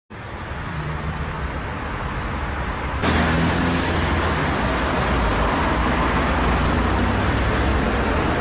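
Steady road traffic noise with a low rumble, becoming louder about three seconds in.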